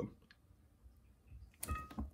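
A ball python strikes a thawed mouse held in metal feeding tongs, heard as a short knock with a faint metallic ring from the tongs about a second and a half in, after a quiet stretch.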